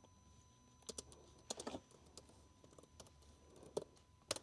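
Faint, scattered keystrokes on a computer keyboard as a file name is typed in.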